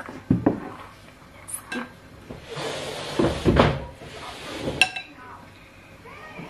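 Ceramic plates and cutlery set down on a wooden dining table: a few short knocks and clinks, a longer scraping rustle in the middle, and one ringing clink about five seconds in.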